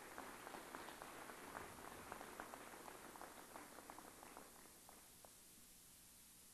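Faint, scattered audience clapping that thins out and stops about five seconds in.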